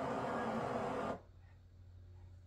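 Audio from a video playing on the computer, a dense steady sound that cuts off suddenly about a second in, leaving a low steady hum.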